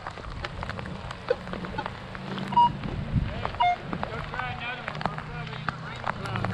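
Minelab X-Terra Pro metal detector giving two short beeps, a higher one then a lower one about a second apart. These are the false signals that the operator puts down to running with iron discrimination off. Crunching footsteps on the playground chips can be heard under the beeps.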